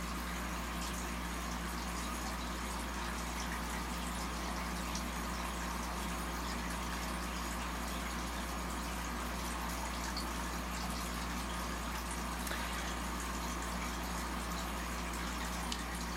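A steady hiss over a low electrical hum: the background noise of the recording, with nothing else standing out.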